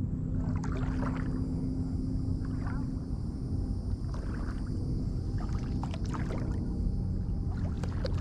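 Legs wading slowly through shallow water, the water swishing around them about once a second over a low steady rumble.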